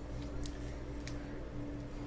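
Steady low electrical hum with a few faint light clicks, about half a second and a second in.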